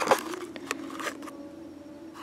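Faint rustling of torn fabric and padding inside a ballistic helmet as fingers pick at it, with a few small clicks.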